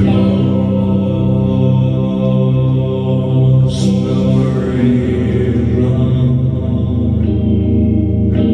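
Loud, droning live music on electric guitar through an amp. It comes in suddenly at full volume, and the chords are held and left ringing.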